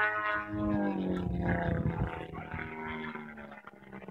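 Engine and propeller drone of an RC Yak 54 model aerobatic plane in flight, a steady tone that drops in pitch about a second in and then fades as it moves away.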